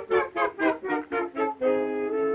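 Orchestral cartoon score: six short, detached notes in quick succession, about four a second, then a held chord from about a second and a half in.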